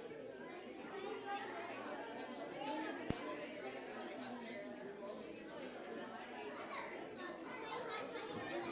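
Many people chatting at once in a large hall: overlapping, indistinct conversation, with a single sharp click about three seconds in.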